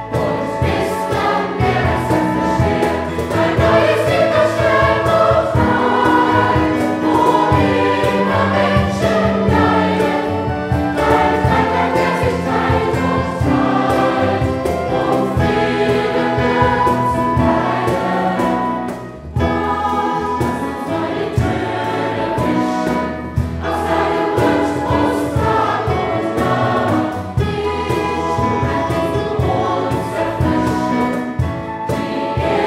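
A large mixed choir of children and adults singing a new sacred song in German. There is one brief break in the sound about two-thirds of the way through.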